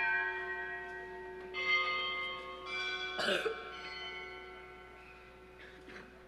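A bell rung three times at the elevation of the host during the consecration, each strike ringing on and slowly fading. Someone coughs in the middle.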